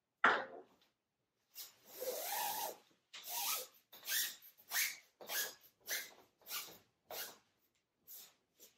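Velvet curtain panel being pushed along a curtain rod through its rod pocket: fabric rustling and rubbing in short, even strokes about every half second after a sharper first scrape and one longer slide.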